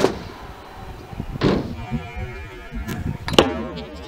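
Stunt scooter knocking against a skatepark ramp: a few sharp knocks, the loudest about three and a half seconds in, over a low rumble of rolling wheels.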